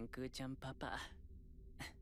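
An anime character speaking in Japanese, stopping about a second in, then a short breathy sigh near the end, over a low steady hum.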